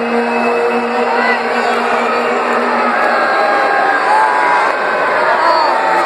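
Arena crowd noise: many voices shouting and calling over one another, with a steady low held tone under them for about the first three seconds.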